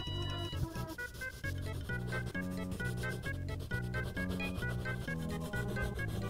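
Background music, a keyboard tune with a steady beat of evenly spaced notes, over the faint rubbing of a Prismacolor colored pencil being stroked across paper.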